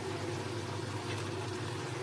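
Okra and tomato masala sizzling steadily in a non-stick kadhai over a gas flame, with a low steady hum underneath.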